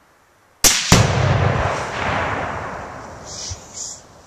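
A suppressed .308 Remington 700 rifle shot, followed a quarter second later by a half-pound Sure Shot exploding target detonating with a heavy boom that echoes and fades over about two and a half seconds.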